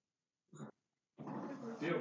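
Talking: one short, clipped sound about half a second in, then a person starts speaking just after a second in.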